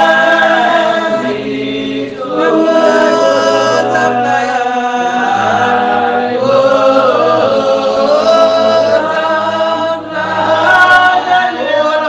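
A group of voices singing a slow worship song in a West Indian Spiritual Baptist style, holding long notes that slide between pitches. Phrases break briefly about two seconds in and again near ten seconds.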